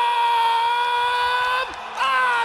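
A man's amplified voice holding one long drawn-out call on a nearly steady pitch: the ring announcer stretching out the winner's name. It breaks off near the end, and a second long call begins that slowly falls in pitch.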